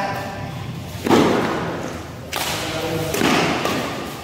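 Badminton rackets striking the shuttlecock during a rally: two sharp hits about a second and a quarter apart, each ringing on briefly in the echo of a large hall.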